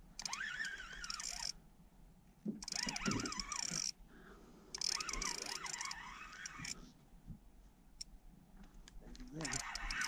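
Spinning reel cranked in three short bursts as a hooked fish is wound in toward the boat, with low, faint voices alongside.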